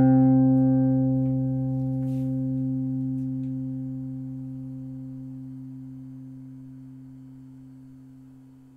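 The song's last note on an electric bass guitar, struck once and left to ring, fading away slowly and steadily. A faint click sounds about two seconds in.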